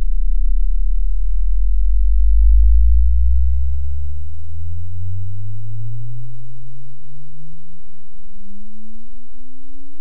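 A 6.5-inch AD 2206 D2 subwoofer in a 3D-printed bass tube enclosure playing a slow rising sine sweep inside a car's cabin. The tone climbs steadily from deep bass to a low hum, loudest in the first few seconds. It is a test sweep for measuring the enclosure's frequency response.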